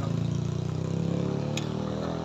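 Motor scooter engine running under steady load as it climbs a steep hill, a low even drone, with one sharp click about one and a half seconds in.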